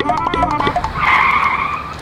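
A short, busy comic music cue, then a tire-screech skid sound effect held for about a second in the second half.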